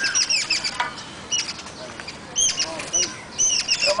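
Rapid, high-pitched chirping of small birds, many short calls in quick succession.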